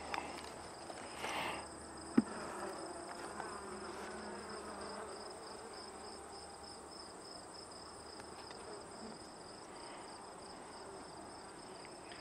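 Honeybees buzzing faintly around an open hive, over a steady, high, pulsing chirp of crickets. A single sharp click about two seconds in.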